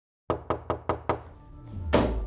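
Five quick, sharp knocks on a door, evenly spaced, followed by a low rising music swell that ends in a hit.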